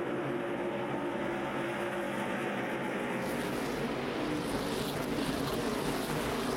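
A pack of NASCAR Nationwide stock cars' V8 engines running together around the track, heard as a steady, dense drone of many overlapping engine tones. About three seconds in the sound turns brighter and hissier.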